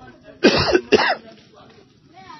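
A man coughing twice in quick succession, clearing his throat, about half a second in.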